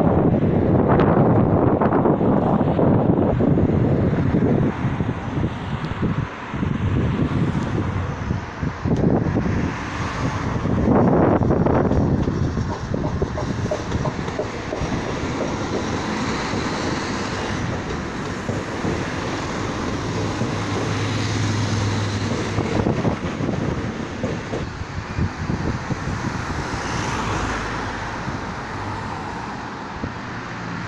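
Alstom Régiolis regional train pulling out of the station and passing close below, a loud, steady running noise that swells and fades. A steady low hum holds for a few seconds about two-thirds of the way in.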